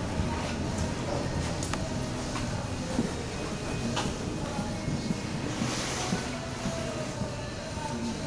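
Indoor riding-arena ambience: indistinct background voices over a steady low rumble, with a few light knocks.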